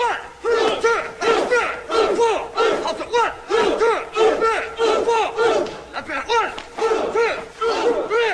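A group of men shouting short, sharp martial-arts battle cries over and over, two or three shouts a second, the voices overlapping.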